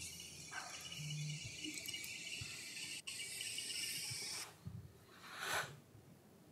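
A steady high-pitched hiss that breaks off for an instant about three seconds in and stops suddenly after about four and a half seconds.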